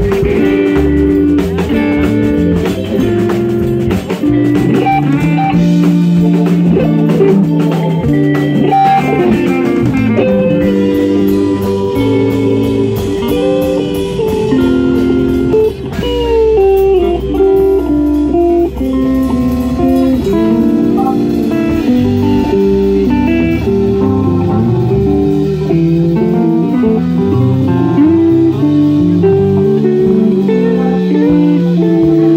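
A live band playing blues-rock, with electric guitar, electric keyboard and a drum kit.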